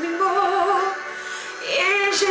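A woman singing a French chanson, holding a note with vibrato that fades after about a second.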